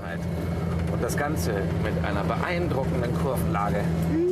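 Renault 4's small four-cylinder engine running steadily as the car drives along, a constant low drone, with a voice talking over it.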